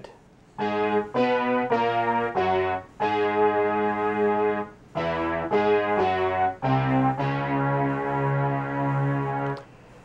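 Synthesizer notes played from a coin-touch MIDI keyboard: a short melodic phrase of separate notes, most about half a second long, with a longer held note near the middle and a final note held for nearly three seconds.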